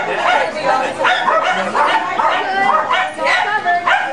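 Jack Russell terriers barking in quick, high yaps, many in a row and overlapping, amid people talking. This is the keyed-up barking of terriers being loaded into the starting boxes before a race.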